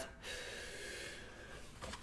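A man taking one deep breath in, a soft airy inhale lasting just over a second, ahead of reading a long passage aloud.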